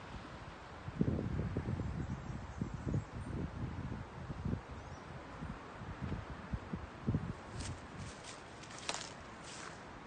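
Wind gusting against a phone microphone, a rumbling buffet that comes in uneven gusts for several seconds and then eases. A few short, sharp crackles follow near the end.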